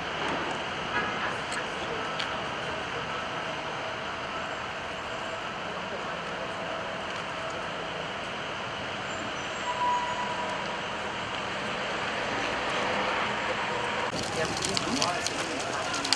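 Steady outdoor street noise from road traffic, a constant hum with no distinct events. Near the end it grows a little louder, with a few sharp clicks.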